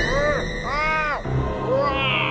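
Two short cartoonish vocal sound effects, each rising then falling in pitch, the second longer, with a smaller one near the end, over background music.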